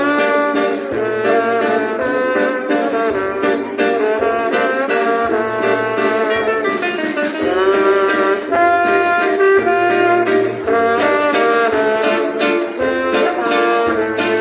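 Live band music led by brass horns, trombone among them, playing a melody over a steady drum beat, heard loud through the concert sound system.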